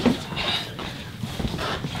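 A sharp knock, then scattered light footsteps and shuffling on a wooden floor as a person moves about quickly.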